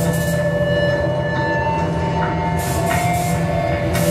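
Experimental electronic drone music played live: a dense, steady wall of sound with a low hum under several held tones that shift slowly, and a hissy swell near the end.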